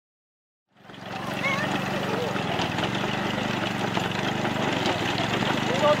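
Small engine of a walk-behind rice binder (harvesting and bundling machine) running steadily as it cuts through a rice paddy, fading in about a second in. A few brief voices and a laugh come in over it near the end.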